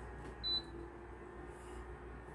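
Induction hob giving one short high-pitched beep about half a second in, followed by a faint low steady hum for about a second.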